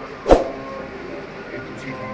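Voices of a seated group talking, with a single sharp knock about a third of a second in, the loudest sound.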